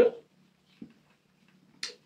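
A pause in a woman's speech. Her voice trails off, leaving near silence with a faint low hum, a tiny click a little under a second in, and a short breath near the end before she speaks again.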